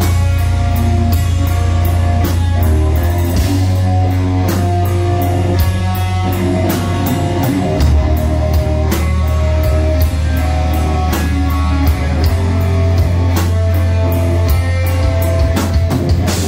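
Heavy metal band playing live without vocals: distorted electric guitar riffing over bass guitar and rapid, driving drums, loud and dense.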